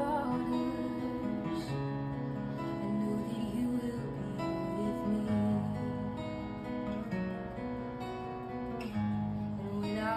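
Acoustic guitar strumming slow, ringing chords. A woman's singing voice finishes a line at the start and comes in again near the end.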